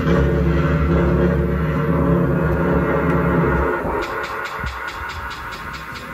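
A band's amplified instruments ring out in one sustained low droning chord, which drops away a little before four seconds in. Then comes a quicker, quieter, steady ticking, about five ticks a second.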